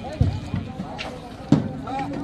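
A few hard knocks of a bull's hooves on the planks of a wooden boat as it is pushed toward the edge to be unloaded, the loudest about one and a half seconds in.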